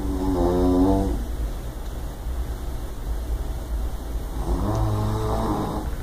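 A man snoring in his sleep: two long pitched snores, one at the start and one about four and a half seconds in, over a low steady rumble.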